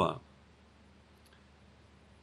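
A man's speech ends, then near silence: room tone in a pause, with one faint click about a second and a half in.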